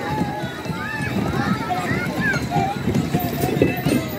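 A crowd of children chattering and calling out at once, many high voices overlapping.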